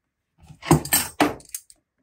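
Metal hand tools clinking and clanking as a crescent wrench is set aside and another wrench picked up: a handful of sharp metallic clinks packed into about a second, starting about half a second in.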